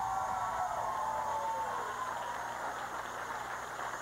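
Studio audience applauding, with some cheering voices that fade out about two seconds in.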